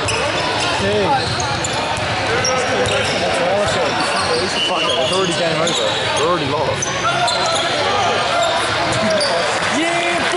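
Basketball game sounds: a ball bouncing on the wooden court under the overlapping voices and shouts of players and spectators.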